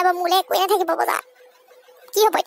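A high-pitched cartoon voice makes a wavering, warbling vocal sound for about the first second, then cuts off, leaving only a faint steady tone.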